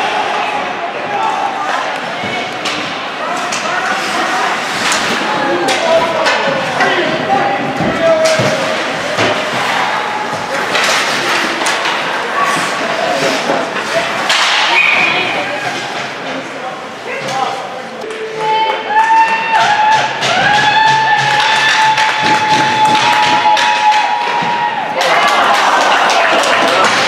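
Ice hockey game sounds: sticks and puck knocking and thudding against the ice and boards, with indistinct voices and music in the arena.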